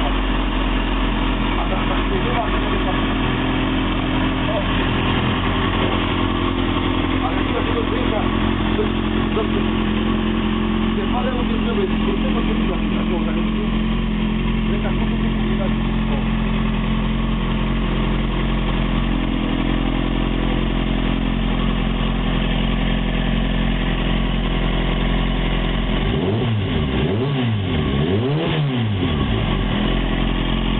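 Kawasaki Ninja ZX-6R 636's inline-four engine running steadily at idle on a paddock stand. Its note swings down and up a few times near the end.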